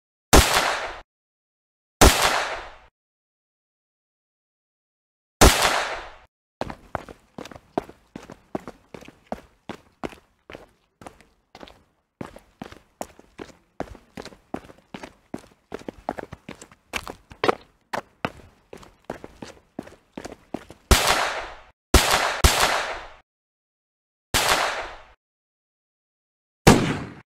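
Dubbed-in gunfire sound effects. Three single loud gunshots come a couple of seconds apart, then a long spell of quieter, rapid, uneven gunfire runs for about fourteen seconds, several shots a second. Four more single loud shots follow near the end.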